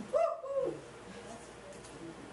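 A short vocal sound from a woman, one or two bending voiced syllables in the first half second, then quiet room tone.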